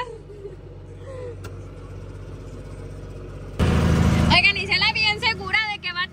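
Tractor engine running with a steady low hum, heard from inside the cab. About three and a half seconds in, a loud rushing noise cuts in for under a second, and voices follow.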